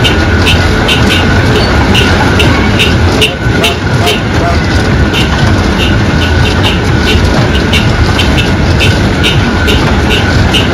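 Small rotating kiddie tractor ride running: a loud steady rumble with a repeating clack, about two to three a second.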